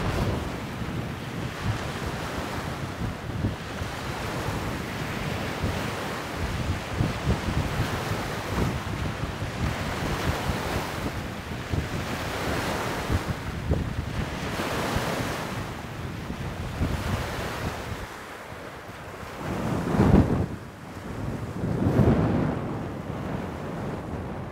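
Waves lapping on a lake shore in strong wind, with wind buffeting the microphone; two louder gusts near the end.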